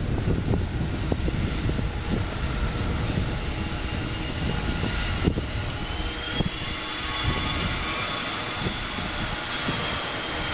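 Boeing 777-200ER airliner's twin jet engines running at taxi power as it taxis away: a steady jet noise with a thin whine that rises slightly about six seconds in.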